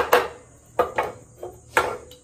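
Stainless-steel bee smokers being handled on a wooden board: a quick series of sharp metallic clanks and knocks, about five in two seconds, each with a short ring.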